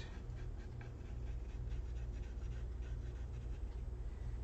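Colored pencil scratching across paper in repeated short shading strokes, over a steady low hum.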